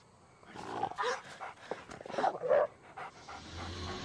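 A dog making a series of short vocal sounds, loudest about two and a half seconds in.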